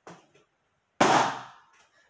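A latex balloon bursting as it is pricked with a tack: one sharp bang about a second in, dying away over about half a second.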